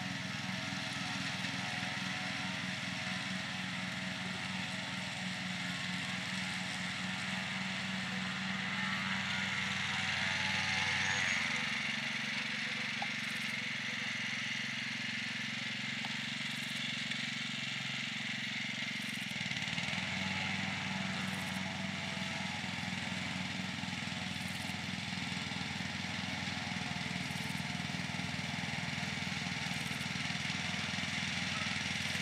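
Riding lawn mower's engine running steadily while it cuts grass. Its low note changes for several seconds in the middle, then returns to the earlier pitch.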